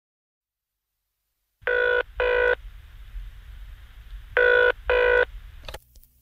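Telephone ringing in the British double-ring pattern, two double rings, with a thin, band-limited sound as if heard over a phone line. A low hum runs under the rings, and a short click near the end is the call being picked up.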